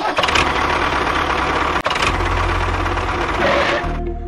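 An engine running steadily with a dense rattling sound, briefly dipping a little under two seconds in, then carrying a heavier low rumble.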